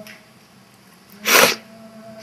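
A single short, sharp, breathy burst of noise from a person, a little past halfway, over a faint lingering hum.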